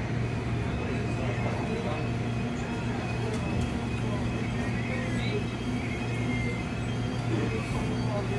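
Steady low hum and rumble inside a subway train car as it runs.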